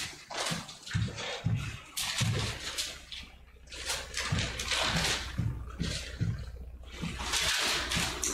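Thin Bible pages being leafed through and turned in quick, irregular rustles, someone searching for a passage. A low steady hum joins about a second and a half in.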